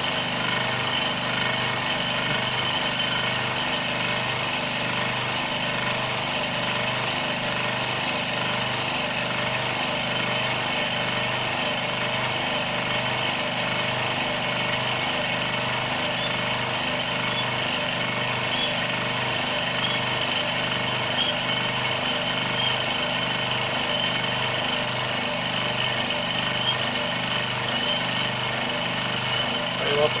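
Electric vibrating base under a wooden resin mould, running with a loud, steady buzz and rattle as it shakes freshly poured polyester resin to lift the air bubbles out.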